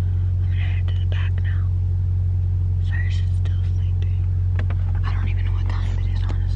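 A woman whispering in short bursts over a steady low hum in a car cabin, with a few faint clicks.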